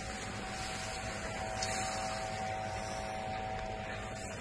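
Steady background noise with a faint, even hum and no distinct events.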